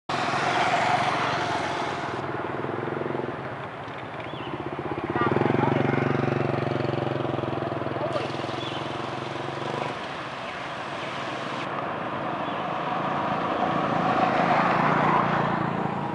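Motor vehicle engines on a road: a motorcycle passing, then an engine running steadily for about five seconds from about five seconds in, with people's voices in the background.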